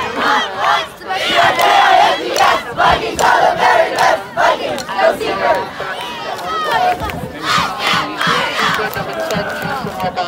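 A squad of young cheerleaders shouting a cheer together, many high voices at once, loudest in the first half and a little softer toward the end.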